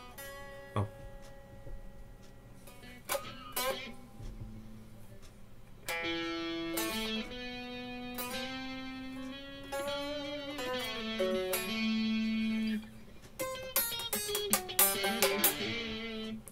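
Electric guitar played through the Nick Crow Lab TubeDriver overdrive plugin into an 8505 amp sim, giving a lightly driven lead tone. A few separate picked notes come first, then a line of held notes from about six seconds in, and a quicker run of notes near the end.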